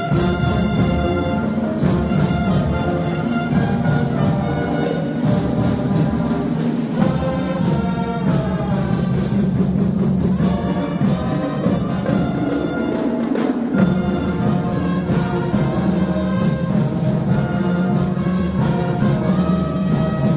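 A school marching band playing live: trumpets, trombones and sousaphones carrying the tune over steady marching drums.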